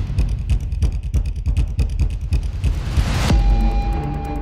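Low rumbling sound effect in a promo's soundtrack, pulsing rapidly. About three seconds in, a sustained musical tone starts as a logo theme begins.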